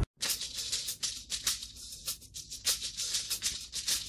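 A shaker playing a steady rhythm of short strokes on its own, quietly, as a song intro.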